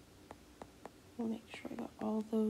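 A few faint light taps of a stylus on a tablet's glass screen, then a quiet, half-whispered voice starting a little past the middle.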